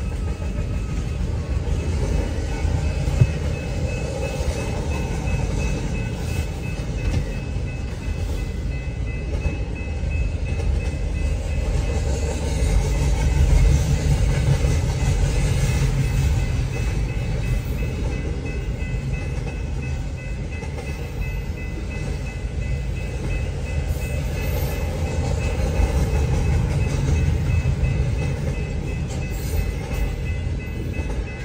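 Double-stack intermodal freight train's well cars rolling past: a steady rumble of wheels on rail that swells a little around the middle, with a faint steady high tone above it.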